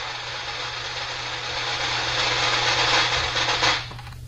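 A sound effect played into the broadcast: a steady, machine-like noise with a low hum under it. It lasts about three and a half seconds and stops just before the end.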